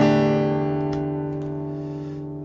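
Acoustic guitar chord strummed once, ringing out and slowly fading.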